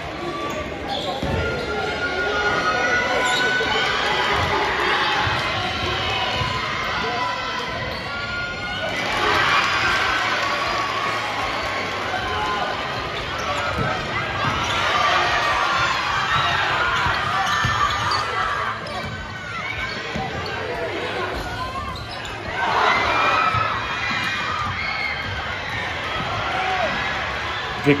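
A basketball bouncing on a gym's hardwood court during live play, under the steady noise of a crowd's voices and shouts echoing in the hall, which swells now and then.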